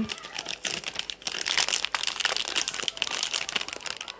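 A plastic food packet crinkling and rustling as it is handled, a continuous run of small crackles.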